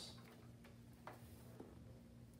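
Near silence: room tone with a steady low electrical hum and a few faint ticks about half a second apart.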